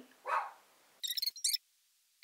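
Pet dogs barking: one bark just after the start, then a quick run of short, high-pitched yaps about a second in.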